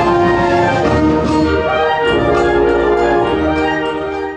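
Symphonic wind band playing slow, held chords of brass and woodwinds.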